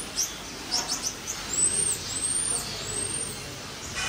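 Red-handed tamarin calling with very high-pitched sounds: quick short chirps, then three thin arched whistles in the second half.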